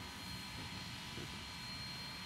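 Faint, steady low rumble of a narrow-gauge steam locomotive standing under steam some way off.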